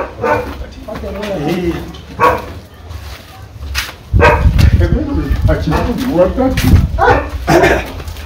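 People talking as they walk, the voices louder from about four seconds in.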